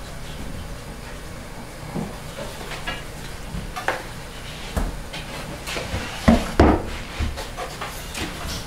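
Hands working bread dough in a plastic bowl and pressing pieces onto a floured wooden table, with scattered soft knocks and thumps, the two loudest a little after six seconds in, over a steady background hiss.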